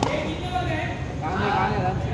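One sharp knock right at the start, then men talking and calling out for the rest of the time.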